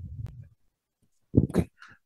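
A pause in speech: the line goes dead silent for most of a second, then a man says a short "okay" near the end.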